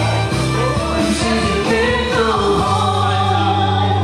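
Karaoke duet: a woman and a man singing into microphones over a recorded backing track. About two-thirds of the way in, the accompaniment settles onto a long held chord.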